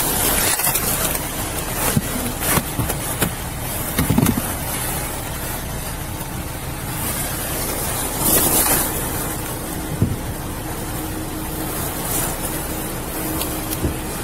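Fabric of a backpack rubbing and rustling against a body-worn camera's microphone, with a few soft knocks as it is handled, over a steady background hum.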